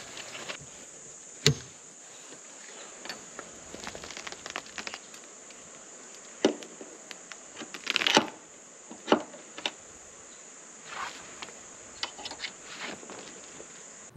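Steady high-pitched insect buzz, with scattered clicks and rustles of canvas and poles as a rooftop tent's side awning is pulled out and set up.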